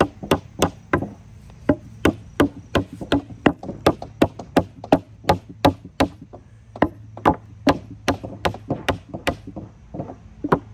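A claw hammer striking the wooden corner of a raised garden bed as a child assembles it: a steady run of sharp knocks, about two and a half a second.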